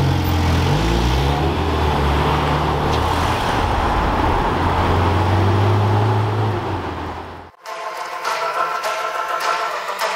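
Ferrari sports car engine running as the car drives slowly past, a deep steady note with slight rises and falls over light traffic. It cuts off abruptly about seven and a half seconds in, and music begins.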